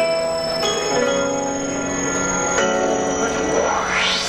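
Instrumental intro of a J-pop backing track: held, bell-like synth chords that change every second or so. A rising sweep near the end leads into the beat.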